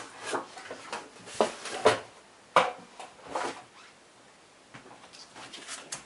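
Knocks and clatter of a Big Shot die-cutting machine being handled and set down on a table: about half a dozen sharp knocks in the first three and a half seconds, then a few faint ticks near the end.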